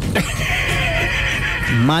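A horse whinnying once for almost two seconds, a shrill, wavering call.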